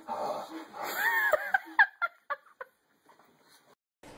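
A startled boy's breathy, gasping cries: a wavering yelp about a second in breaks into a string of short yelps that die away by about the middle.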